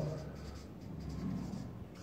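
Marker pen writing on flip-chart paper: faint, uneven scratching strokes.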